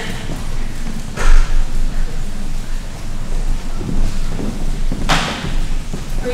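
Footsteps and knocks on a stage floor as a child walks up for a certificate, with one loud thump about a second in and a brief rush of noise near the end.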